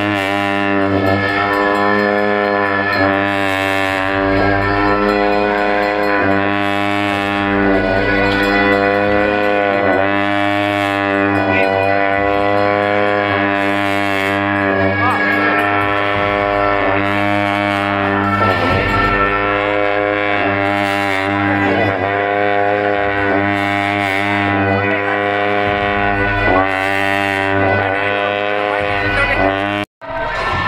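Tibetan monastic ritual music: long horns hold a steady, low drone, and cymbals crash every few seconds.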